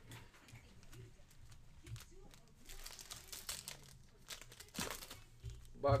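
Foil trading card pack wrappers crinkling as a pack is torn open, in a run of short crackly rustles.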